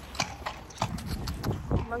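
A horse close to the microphone making a few sharp, irregular clicks and knocks as it moves its head and muzzle about.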